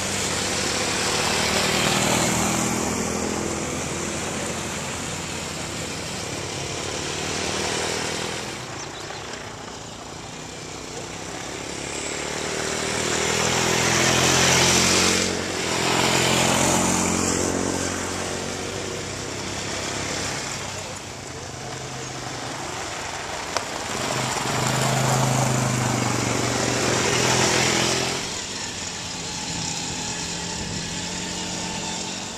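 Small youth quad bike engines running as riders circle a dirt track. The engine note shifts in pitch with throttle, and the sound swells and fades several times as the quads pass close and move away.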